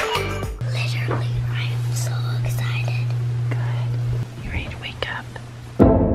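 Soft whispering over a steady low hum, with background music that stops about half a second in and comes back near the end.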